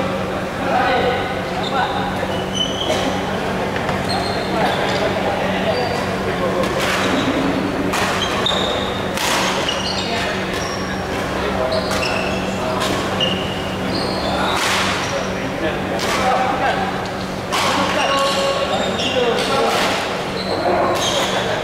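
A badminton rally in a large sports hall: repeated sharp racket strikes on the shuttlecock and shoes squeaking on the wooden court floor, with voices of players and onlookers echoing around the hall.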